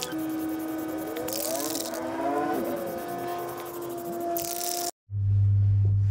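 Background music with held notes and gliding tones, over which two short bursts of aerosol spray-paint hiss sound, about a second and a half in and again near five seconds. The sound then drops out briefly and a loud steady low hum follows.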